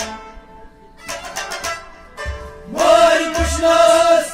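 Folk music with a live band: after a brief lull, a plucked string instrument plays quick strokes and a drum gives low thumps. About three seconds in, a man's voice comes in on a long, wavering held note.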